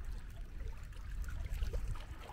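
Wind buffeting the microphone as a choppy low rumble, with small wind-driven waves lapping faintly.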